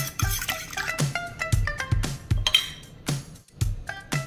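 A fork whisking eggs in a glass baking dish, with rapid clicks of metal against glass that stop near the end. Background music plays throughout.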